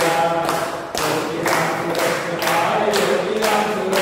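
A group of people singing a devotional chant in unison, with rhythmic hand clapping about twice a second.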